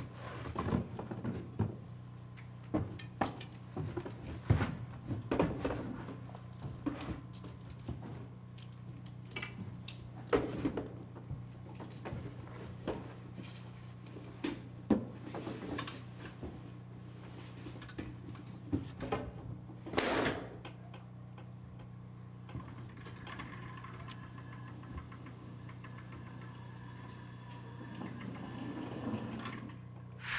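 Irregular clicks, clinks and knocks of a firefighter's bailout gear being handled: rope, metal hook and fittings, and heavy turnout gear scraping through a window opening. A louder knock comes about twenty seconds in. Over it runs a steady low hum.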